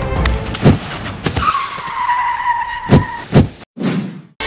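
Added comedy sound effects: several loud, sharp hits and a long, high screech like skidding tyres. The sound cuts out briefly near the end.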